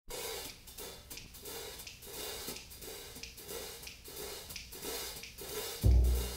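Soft swishing pulses in a steady rhythm, about three every two seconds, open a 1957 jazz recording. The full band comes in loud, with a strong low end, just before the end.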